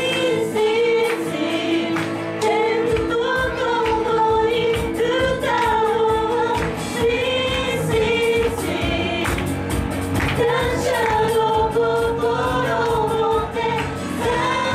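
A Japanese Christian praise song sung by a female lead singer through a handheld microphone, backed by a live band with electric guitar and keyboard. The low end and a regular beat come in fully about three seconds in.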